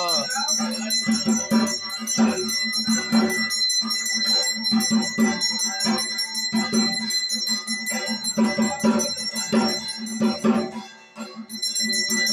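Aarti music: a hand bell rings continuously over a steady percussion beat of about two to three strokes a second. The sound briefly drops away about a second before the end.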